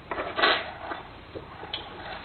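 Handling noise from fitting a smart lock's front panel and its connecting cable to the door: a short scraping rustle about half a second in, then a few faint small clicks.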